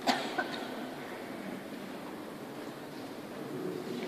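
Two sharp knocks about a third of a second apart near the start, over a steady background of a procession moving up the aisle inside a large church.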